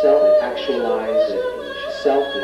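Singing voices in the performance's music: a held sung note breaks off about half a second in, followed by several shifting vocal lines.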